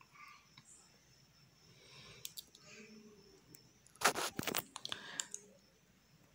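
Felt-tip marker scratching across the drawing surface in a few quick strokes, loudest about four to five seconds in, with quieter stretches between.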